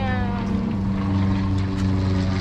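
A steady, low engine drone made of a few even hum tones.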